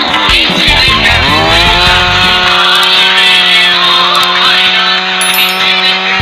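Petrol chainsaw cutting through an acacia (kikar) log: its engine pitch dips and climbs about a second in, then holds steady at high speed through the cut. Music plays underneath.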